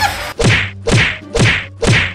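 Movie punch sound effects: a rapid string of dubbed whacks, about two a second, each a sharp smack with a low thud beneath it, as a fighter throws quick little punches.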